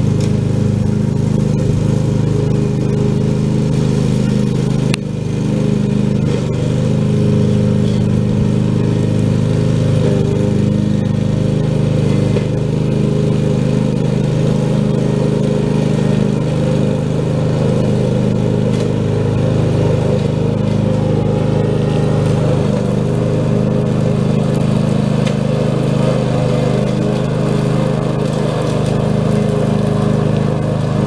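Husqvarna ride-on lawn mower running steadily while mowing grass, its engine note holding even throughout, with one brief drop and a click about five seconds in.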